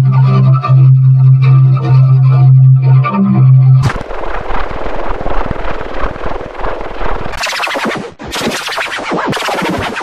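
Loud, heavily distorted electronic sound: a steady low buzzing tone for nearly four seconds, then a dense crackling noise, and from about seven seconds three bursts of harsh hiss.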